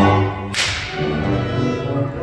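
Concert band playing sustained notes, with a single sharp crack from the percussion about half a second in that dies away quickly.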